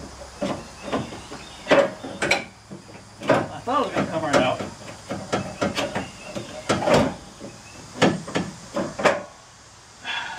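Irregular knocks and clunks of plastic and metal parts being tugged and rattled as a stuck part is worked loose from the front end of a pickup truck.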